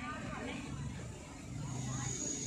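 Faint, indistinct voices over a steady low rumble.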